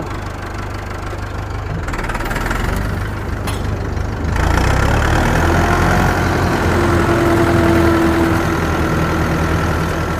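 Massey Ferguson 261 tractor engine running steadily, getting louder from about four seconds in.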